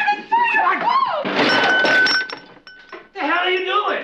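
Glass breaking in a loud crash about a second in, with a clear ringing tone hanging on for a couple of seconds afterwards; voices before and after.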